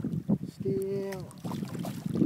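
A hooked rainbow trout splashing and thrashing at the surface beside a landing net, with a man's short, held vocal sound about halfway through.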